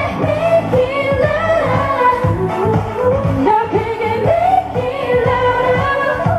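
Upbeat K-pop dance song with a female lead vocal over a steady, driving drum beat, played loud.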